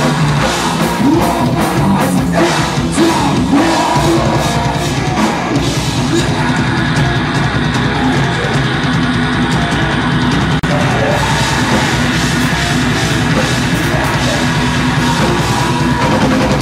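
Live heavy rock band playing a loud song with drum kit and guitars, recorded from the audience on a camera's built-in microphone.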